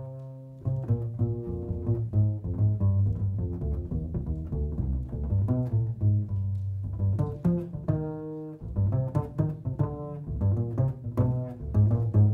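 Upright double bass played pizzicato in a jazz bass solo: a fast run of plucked low notes, with a few held notes left ringing, briefly at the start and again about eight seconds in.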